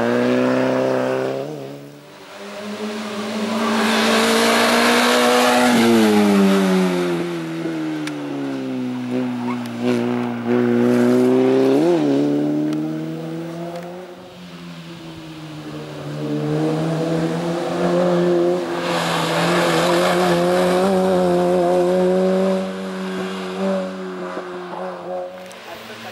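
A slalom race car's engine revving hard and dropping back again and again as the car accelerates and brakes between cones. The pitch falls away sharply a few seconds in and jumps up and down in a quick blip about halfway through.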